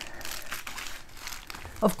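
Quiet crinkling and rustling of a diamond painting kit's packaging as it is picked up and handled.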